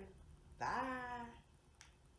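A woman's voice saying one drawn-out, sing-song "bye".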